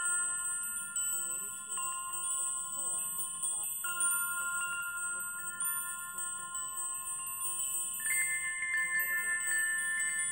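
Metal chimes struck one after another, each tone ringing on and overlapping the next. A new, higher tone comes in about eight seconds in.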